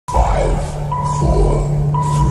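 Countdown intro sound effect: a steady high beep tone that breaks briefly and restarts about once a second, marking each count, over a low humming drone with soft whooshes.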